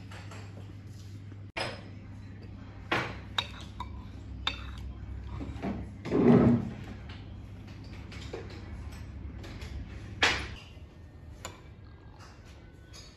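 Metal spoon clinking against a ceramic soup bowl as soup is eaten: several sharp, separate clinks, with one louder, longer, lower sound about six seconds in.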